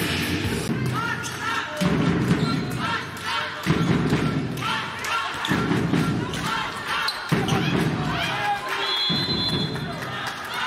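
Handball play on an indoor court: the ball bouncing and thudding, sports shoes squeaking on the hall floor, and players' voices.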